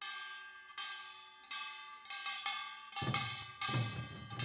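Kkwaenggwari (small Korean brass gong) struck, each stroke ringing and fading, first about one every three-quarters of a second and then closer together. About three seconds in, a drum joins with low thuds.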